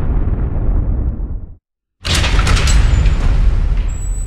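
Deep boom sound effects for a title sequence. The first fades and cuts off into silence about a second and a half in. A second heavy hit strikes at the halfway point and slowly dies away.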